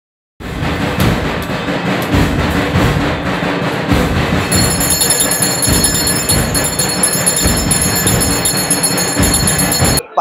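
Loud, dense clanging of temple bells and metal percussion at a puja, with a deep beat roughly every one and a half to two seconds; a steady high ringing joins about halfway.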